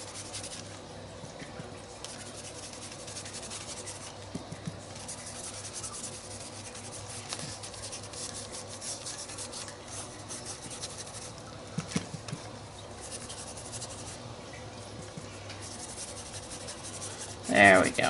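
Paintbrush bristles brushing acrylic paint across a paper journal page: a soft, continuous scratchy rubbing, with a few light taps around two thirds of the way through.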